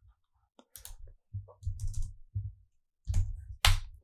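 Typing on a computer keyboard with clicks, in short runs of keystrokes with dull thumps under them, the loudest run near the end.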